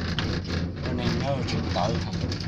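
Steady low hum and rumble inside a moving cable-car cabin, with voices talking over it.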